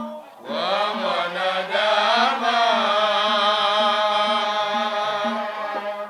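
Male lead singer chanting a qaswida (Swahili devotional song) into a microphone: one long melismatic line that starts about half a second in, with a long held, wavering note in the middle. A low hum pulses regularly underneath.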